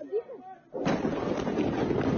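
Large explosion recorded on a phone: faint voices, then about a second in a sudden loud blast whose rumble carries on without a break.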